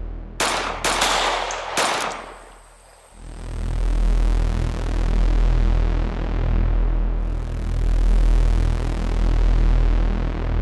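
Four gunshots, sharp cracks in the first two seconds, over a bass-heavy electronic music score. The music drops almost out just before three seconds in, then comes back with a steady low beat.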